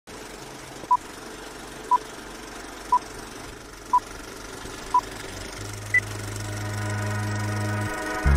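Film-leader countdown sound effect: five short beeps of the same pitch, one a second, then one higher beep, over a steady rattling hiss. A low hum comes in about five and a half seconds in and swells louder.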